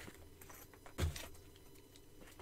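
Soft handling noises of colored pencils clicking together as a fabric pencil-roll case is moved, with one louder knock about a second in.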